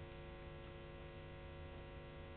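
Faint, steady electrical mains hum with a stack of evenly spaced overtones.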